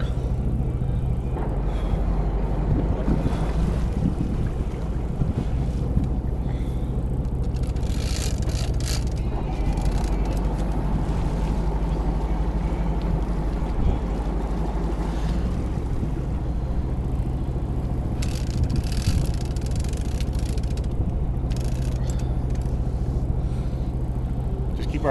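Boat engine running steadily with a constant low hum, with wind gusting over the microphone a few times: once about a third of the way in and again past three quarters of the way.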